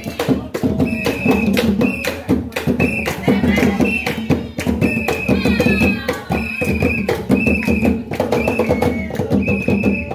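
Traditional Congo drumming on tall hand drums, a fast, dense rhythm of strokes. A short, steady high note comes back about once a second over the drums.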